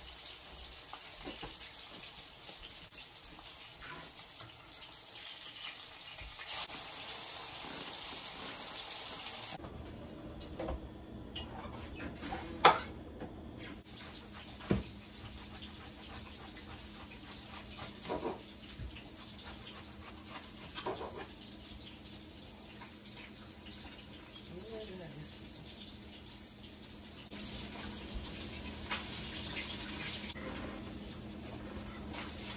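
Fish fillets frying in a pan of oil, a steady sizzle that drops away about ten seconds in and comes back near the end. In between, a few sharp knocks of a knife on a cutting board as vegetables are cut.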